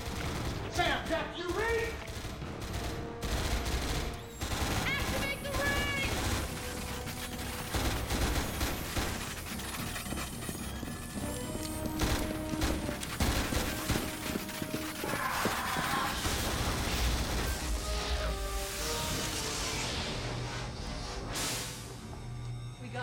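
Repeated bursts of automatic gunfire over a tense music score.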